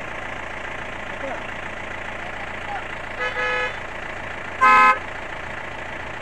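Vehicle engine idling with two short car-horn toots about a second and a half apart, the second louder and shorter.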